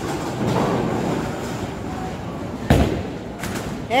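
Bowling ball rolling down a lane, then hitting the pins with one sharp crash about two and a half seconds in, followed by a few smaller clatters of pins, in a large echoing alley.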